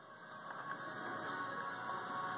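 Faint handling noise from a plastic credit-card folding knife as fingers work its small locking tab, with a few light ticks about half a second in.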